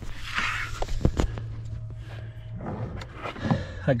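Rustling and scraping as a power cable, taped to a claw pick-up tool, is pulled through a car's firewall grommet. There are two sharp knocks about a second in, then quieter handling noise.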